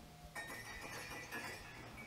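Faint shop background: quiet music playing over a low steady hum.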